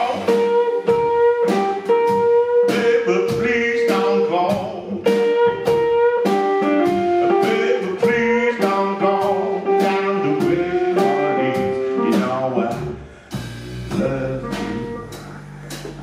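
Live blues band playing a stretch without vocals: hollow-body electric guitar carrying the melody in repeated held notes over upright bass and drums. The band drops quieter for the last few seconds, with low bass notes standing out.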